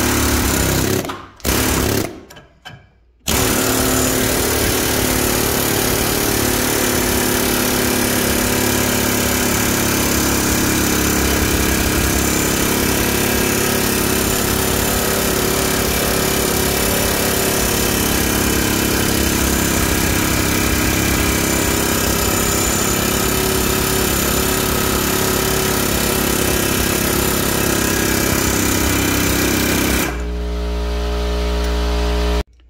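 Snap-on Super-Duty air hammer (PH3050B) hammering its cutting chisel against a large steel bolt to shear it, a loud, rapid pneumatic rattle. It cuts out twice, briefly, in the first three seconds, then runs without a break until it stops at the end.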